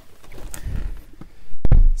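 Muffled low thumps and rustling of someone climbing into a car's seat, ending in a heavy thud near the end.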